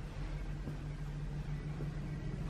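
A steady low machine hum with a light hiss over it, unchanging throughout.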